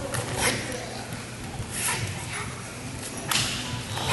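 A pair of live-bladed Shureido kamas swung in fast strikes, giving about four sharp whip-like swishes spread over a few seconds, over the murmur of a gymnasium.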